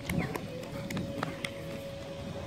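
Open-air background of distant voices with a faint steady hum and scattered light clicks.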